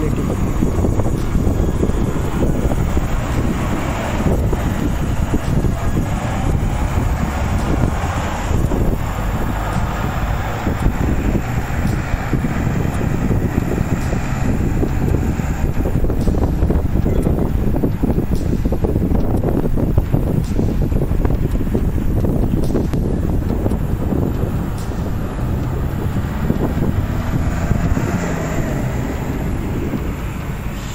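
Strong wind rushing and buffeting the microphone in a sandstorm, a constant loud low rumble, with vehicle engine noise from a garbage truck and traffic underneath it.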